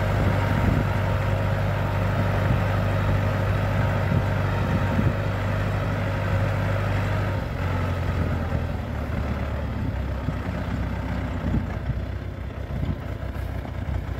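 T-40AP tractor's air-cooled four-cylinder diesel running steadily under load while it drags a steel rail leveller across the field. About halfway through its note drops lower, and it grows slightly fainter as it moves away.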